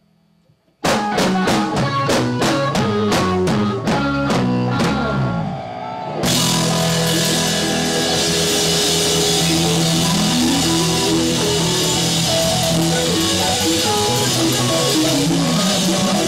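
A live rock band comes in suddenly with a run of short repeated chords, about three a second, that fade out. About six seconds in, the full band with drum kit, electric guitar and bass kicks in loud and keeps playing.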